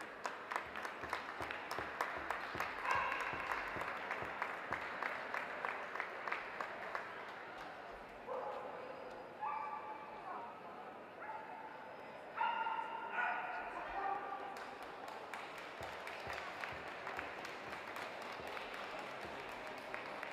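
Audience clapping in a large hall, with several short dog barks and yips rising above it, mostly in the second half.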